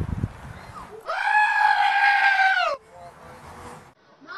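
A sheep lets out one long, loud bleat held at a steady pitch. It starts about a second in, lasts close to two seconds and cuts off abruptly.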